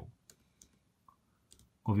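A few faint clicks of MacBook Pro laptop keys being pressed, about three spaced out across the gap.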